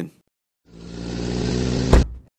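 Vehicle engine sound effect running steadily, growing louder as the vehicle arrives, with a short thump near the end as it pulls up.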